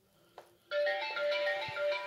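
Eufy RoboVac L70 Hybrid robot vacuum playing its power-on chime, a short electronic melody of stepped notes. The chime starts just after a faint click, about half a second into the sound.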